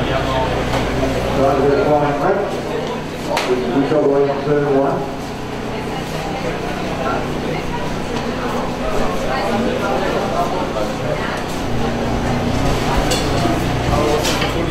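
People's voices talking, clearest in the first few seconds, with a sharp knock about three and a half seconds in.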